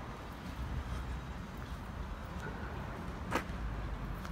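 Low steady outdoor rumble of traffic around a parking lot, with one sharp click a little past three seconds in.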